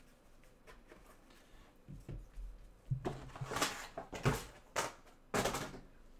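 Gloved hands handling a cardboard trading-card hobby box and its foam insert: after a quiet start, a run of short scrapes and knocks in the second half as the lid and insert are moved and the box is closed.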